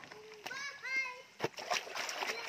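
Water splashing as clothes are dunked and rubbed by hand in a shallow stream, mostly near the end, with a sharp knock just before. Earlier, a high-pitched voice calls out briefly.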